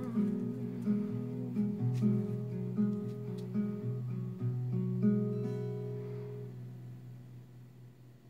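Gypsy-jazz-style acoustic guitar with an oval soundhole, played without singing in a steady picked pattern of about two or three notes a second. About five seconds in the song ends on a final chord that rings on and fades away.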